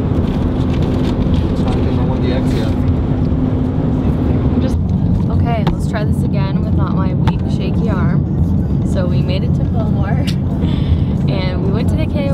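Steady road and engine noise inside a moving car's cabin, with a steady hum over it for the first few seconds. Voices talk over the noise from about five seconds in.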